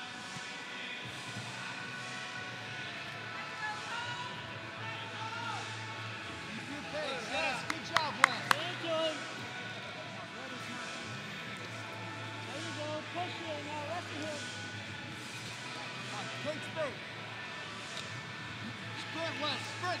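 Arena ambience during a wrestling bout: faint shouted voices over a steady low hum, with a quick run of three or four sharp smacks about eight seconds in.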